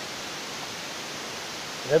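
Steady, even hiss of room background noise in a pause between voices, with a man's chanting voice starting at the very end.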